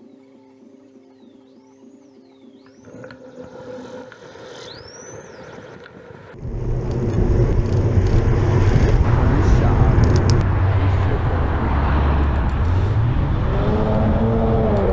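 Soft background music with steady tones and repeating chirp-like glides fades into street ambience. About six seconds in, loud wind rumble on the camera's microphone and traffic noise set in suddenly and stay as the camera moves along the road.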